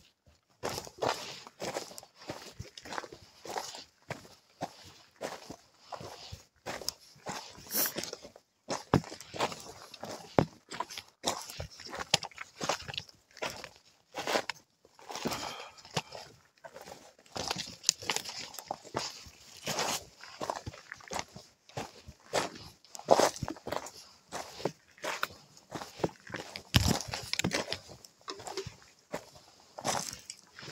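A hiker's footsteps on a mountain trail, walking downhill at a steady pace of about two steps a second.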